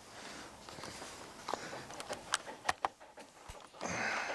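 An Australian Shepherd-mix puppy and a red Queensland heeler moving and sniffing at each other close up, with soft rustling and a few sharp clicks in the middle as the puppy shifts on a metal mesh chair seat.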